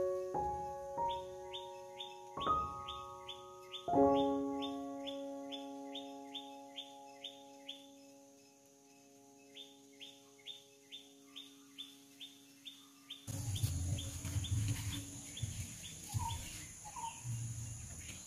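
A bird repeating short, falling chirps, about three a second, over soft piano notes that fade out in the first few seconds. From about two-thirds of the way in, outdoor ambience takes over: a high steady insect drone and low handling sounds.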